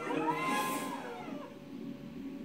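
A drawn-out, exclaimed "yeah" in a voice whose pitch rises and falls, fading out after about a second and a half. Background music runs underneath.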